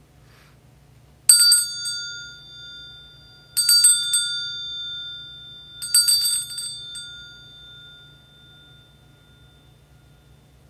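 Altar bells (Sanctus bells) shaken three times, each ring a quick cluster of strikes that fades out over a couple of seconds. They are rung at the elevation of the chalice just after its consecration at Mass.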